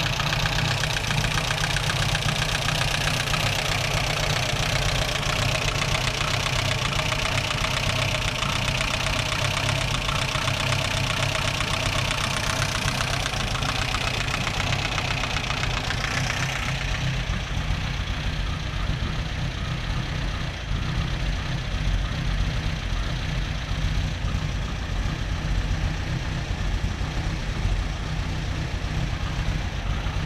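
Vintage MG's twin-carburettor engine idling steadily at about 1,000 rpm. Its higher, hissing intake and mechanical sound fades about 17 seconds in, leaving the low idle.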